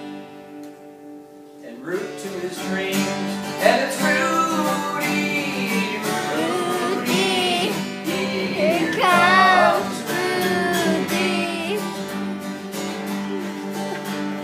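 Acoustic guitar strummed to a song, with singing coming in about two seconds in.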